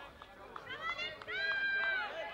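Shouting voices on a field hockey pitch: short rising calls, then one long, high, held shout near the end, with a few faint clicks among them.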